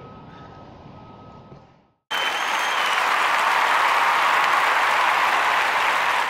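Faint room tone with a thin steady hum, then about two seconds in a sudden burst of crowd applause that holds steady, with a brief high whistle as it begins.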